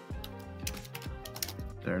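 Computer keyboard being typed in a quick, irregular run of clicks as a chat prompt is finished, over background music.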